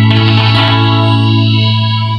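Amplified norteño-style band of accordion and guitars holding a final chord, with a strong low bass note under it. The upper notes fade from about the middle while the bass note rings on.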